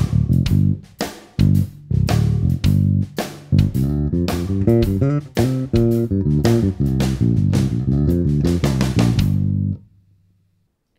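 Human Base Roxy B5 five-string electric bass played fingerstyle, with its electronics in passive mode and the pickups wired in parallel. A bass groove that moves into a run of quick notes about halfway through and stops just before the end.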